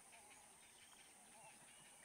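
Near silence: faint outdoor ambience with a thin, steady high hiss.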